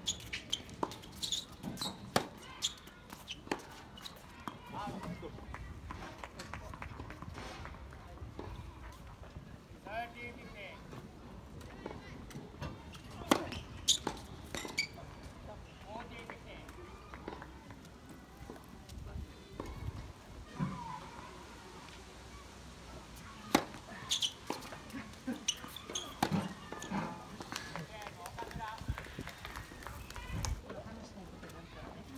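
Tennis balls struck by rackets and bouncing on a hard court: sharp pops, quick in the first few seconds of a rally, then scattered single pops, with short bursts of voices in between.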